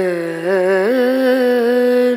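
Background song: a single voice holds a long, wavering sung note, then slides up to a higher held note about a second in.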